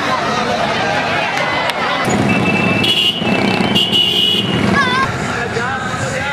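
Loud street crowd noise with many voices mixed with traffic. About two seconds in, a high steady horn-like tone sounds twice, the second time about a second later.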